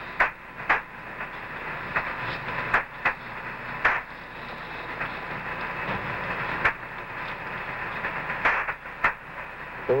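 Radio static from the Apollo air-to-ground communications channel: a steady hiss with scattered sharp clicks and crackles, swelling a little midway.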